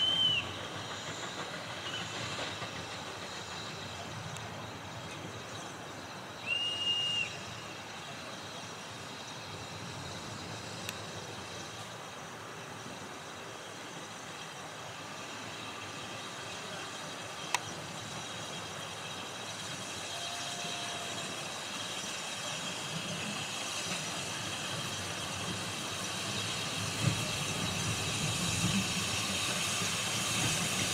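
Steam cog locomotive approaching: two short, high whistle toots, one at the start and a longer one about seven seconds in, then the locomotive's steam hiss and working sound growing steadily louder toward the end.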